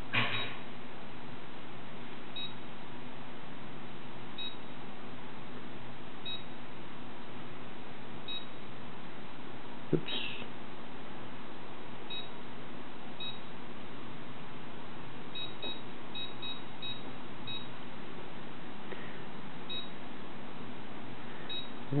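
Short, high keypad beeps from a Watson-Marlow 323Dz peristaltic pump as its menu buttons are pressed to change the speed setting. They come one at a time a couple of seconds apart, then several in quick succession later on, over a steady low hum, with a single click about ten seconds in.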